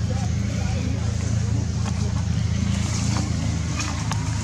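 Steady low hum of an idling engine, with faint voices wavering in the background and a couple of soft clicks.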